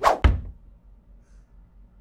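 Two quick thumps in the first half second, the second one deeper, then quiet.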